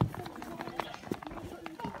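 Footsteps in deep fresh snow, many short sharp steps close together, with people's voices underneath.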